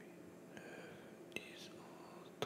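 Quiet room tone with a low hum, soft breathing and one sharp click a little past halfway.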